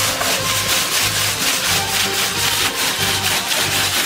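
A mass of sea snail shells rattling and scraping as they are shaken back and forth across a metal sorting grate, in a fast rough rhythm, with music underneath.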